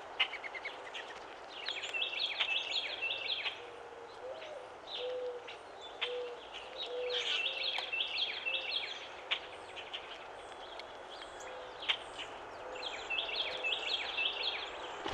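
Wild birds calling: bursts of quick, high chirping notes, with a low cooing call of about five evenly spaced notes in the middle.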